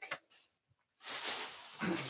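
A large clear plastic bag full of t-shirts rustling and crinkling as it is grabbed and lifted, starting about a second in.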